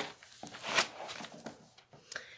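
Paper handling: a sticker being peeled from its paper sheet, with a click at the start and a few short, soft rustles.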